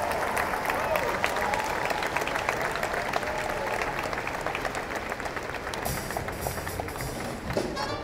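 Audience applauding, with the band's music underneath; the clapping thins out near the end.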